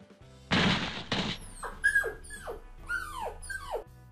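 Two short bursts of noise, then a series of about five falling, dog-like whimpers from the wolf as he is pinned and choked, over background music.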